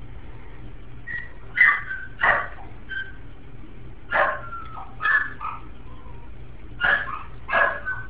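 A small young animal barking in short, high yaps: about six loud ones and a few softer ones, roughly one a second.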